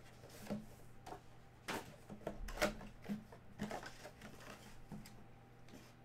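Hands handling and opening a cardboard trading-card box: irregular light rustles, taps and clicks of the flaps and packaging.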